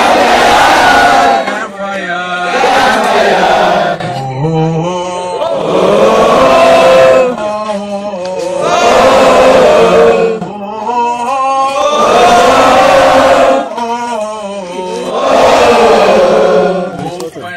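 A group of scouts chanting a campfire song in loud repeated phrases, a single man's voice alternating with the whole group about every two to three seconds.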